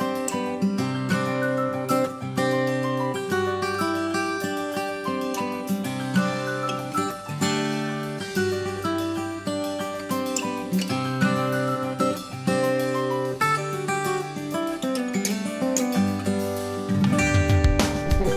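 Background music led by acoustic guitar, playing plucked notes over sustained chords.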